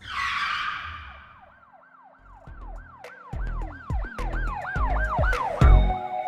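Channel logo intro sting: a whoosh, then a run of repeating siren-like swooping tones, about three a second and getting quicker. A low pulsing beat joins under them about two seconds in, and the whole builds in loudness toward the end.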